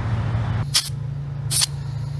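Hand-held tyre inflator fed from an air tank, letting compressed air into a car tyre in two short hisses under a second apart, over a steady low engine hum.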